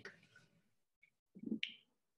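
Near silence on an open microphone, broken about one and a half seconds in by one short, faint snap-like click.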